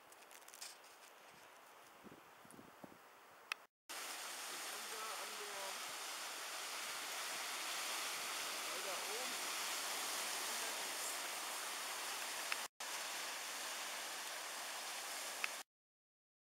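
Waves breaking and washing over a rocky lava shoreline, a steady rushing noise that starts suddenly about four seconds in and cuts off shortly before the end. Before it there are a few seconds of much quieter outdoor sound with faint knocks.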